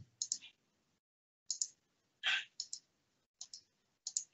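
Quiet, irregular clicking at a computer, about seven light, sharp clicks spread across a few seconds, one near the middle a little fuller than the rest.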